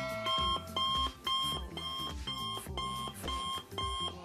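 Electronic alarm-clock beeping, about two short two-tone beeps a second, over background music.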